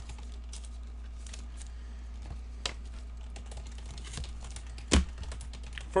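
Scattered light clicks and taps, with one sharper knock about five seconds in, over a steady low hum.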